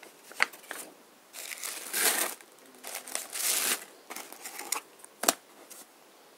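Paper rustling and crinkling as a folded printed sheet and a card are handled, in two longer rustles with a few sharp taps; the sharpest tap comes about five seconds in.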